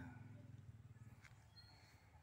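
Near silence: faint outdoor background, with a low rumble fading away over the first second, a faint click, and a brief high whistle past the middle.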